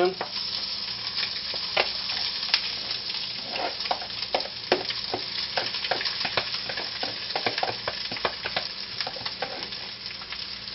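Hot oil sizzling in a frying pan as egg-coated rice goes in on top of diced Spam and vegetables, with a steady hiss and many small crackles throughout.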